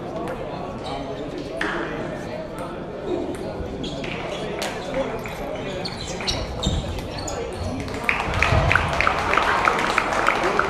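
Table tennis balls clicking off bats and tables in a large, echoing hall, over a steady murmur of voices; near the end a quick rally of clicks, several a second, is the loudest sound.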